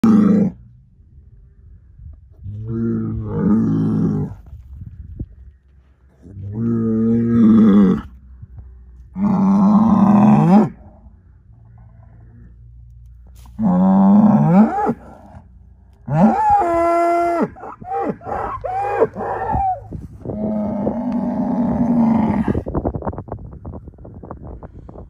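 Angus bull bellowing again and again, each deep call lasting one to two seconds with a pause of a few seconds between. About two-thirds of the way in, the calls rise in pitch and come as a quick run of shorter calls, then one last long low bellow.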